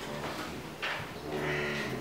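A man's low, drawn-out hum twice, with a brief rustle of paper about a second in.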